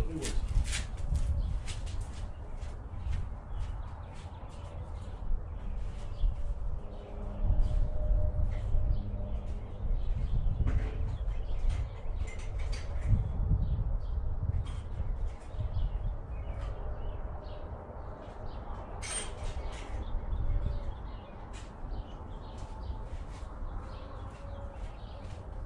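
Small birds chirping in many short calls, over an uneven low rumble of wind on the microphone.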